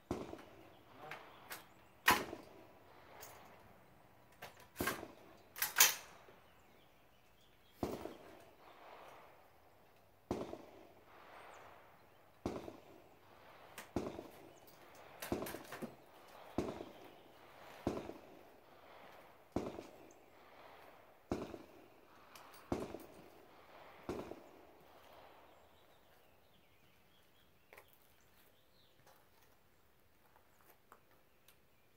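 AR-15-style rifle fired in a steady string of about a dozen shots, roughly one every second and a half, each with a short echo. A few sharp reports come in the first six seconds before the steady string starts.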